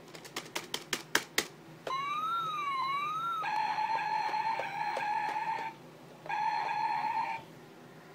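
A quick run of sharp clicks, then electronic sound effects: two tones gliding up and down across each other for about a second and a half, followed by a steady electronic buzz tone lasting about two seconds and a shorter repeat of it near the end.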